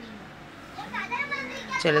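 Children's voices in the background, faint, with rising and falling calls, then a woman starts speaking near the end.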